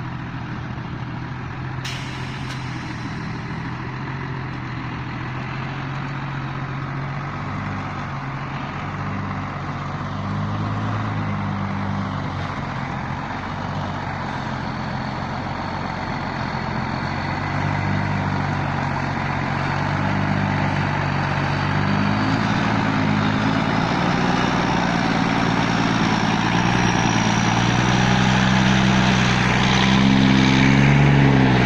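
Engine of a heavy truck loaded with sugarcane pulling across a field, its note rising and falling several times as it works, growing louder toward the end as it closes in.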